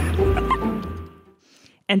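A woman's laughter trailing off over a low wind rumble on the microphone, fading out about a second and a half in; speech begins just at the end.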